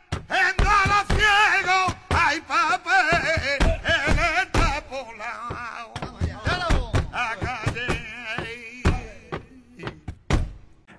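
Male flamenco singer singing a soleá a palo seco, with no guitar: a long, ornamented vocal line whose pitch wavers and bends on held notes. Sharp knocks keep the compás beneath the voice.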